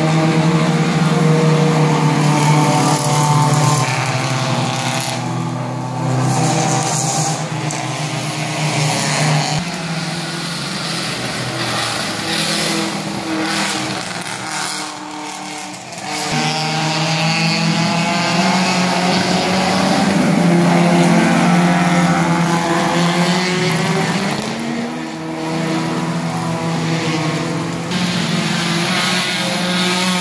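Race car engines revving hard as the cars pass one after another, the pitch climbing and falling with each gear change and lift of the throttle. It eases to a quieter spell around the middle, then rises again as the next car comes through.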